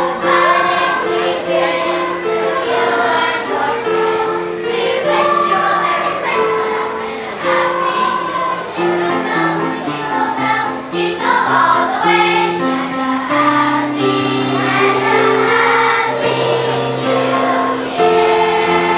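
Children's choir singing a medley of Christmas songs, the notes held and moving in steps throughout.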